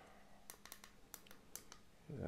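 Near silence with about seven faint, sharp clicks scattered through it: light handling knocks from a bare circuit board and its power cable being held and moved.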